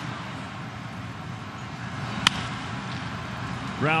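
A wooden bat cracks once, sharply, against a pitched baseball about two seconds in, sending it on the ground. Under it runs a steady hum of ballpark ambience.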